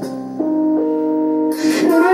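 Karaoke backing track playing its instrumental lead-in: sustained keyboard chords with a melody that steps to a new note every half second or so. A brief hiss comes in about a second and a half in, just before the vocal entry.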